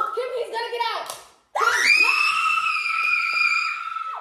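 A second of excited talk, then a long, high-pitched scream from a person, held steady for about two and a half seconds.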